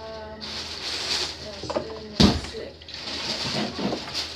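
A clay-trimming turning tool scraping against the plastic rim of a potter's wheel tray, then one sharp knock about two seconds in, over the low steady hum of the running electric wheel.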